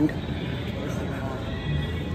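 Indoor shopping-mall ambience: a steady murmur of distant voices with faint background music, echoing in a large hall.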